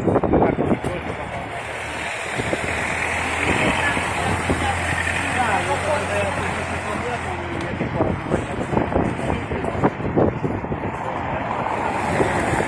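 A car moving slowly past close by on a wet street, its engine humming and its tyres hissing for several seconds, with people's voices around it.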